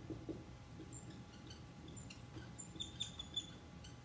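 Dry-erase marker squeaking on a whiteboard as a word is written: a string of short, high-pitched squeaks, densest in the second half, with a few soft knocks near the start.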